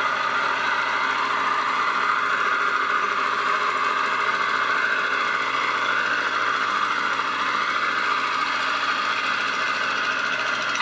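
Portable sawmill's engine running steadily at an even speed while a log is milled into lumber.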